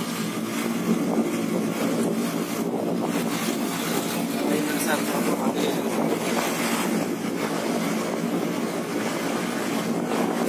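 Steady wind buffeting a handheld phone microphone, a continuous rumbling noise, with indistinct voices under it.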